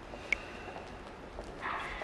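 Quiet background with faint, evenly spaced footsteps, and a single short, sharp tick about a third of a second in. Music begins to rise in near the end.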